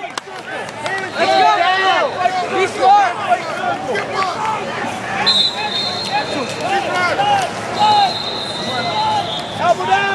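Overlapping voices and chatter of people in a large arena hall, none of it clear words. A thin, steady high tone comes in about five seconds in and holds for a couple of seconds, then returns near the end.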